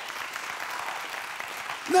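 Studio audience applauding, steady clapping.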